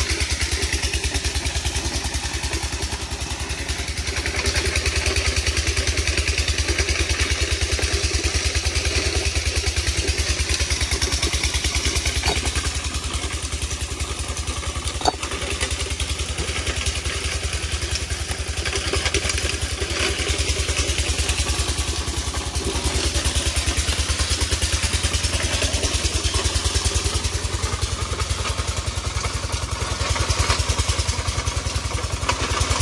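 Engine of a stone-grinding machine running steadily, a fast even low thrum, with a single sharp knock about halfway through.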